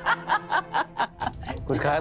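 A person laughing in a quick run of short chuckles, about five a second, fading about a second and a half in before speech begins.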